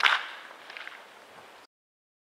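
Baseball bat striking a ball: one sharp crack at the start with a short fading tail. A few faint clicks follow just under a second later, then the sound cuts to silence near the end.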